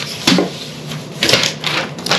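Sheets of printed paper rustling and flapping as they are leafed through by hand, in two bursts about a second apart.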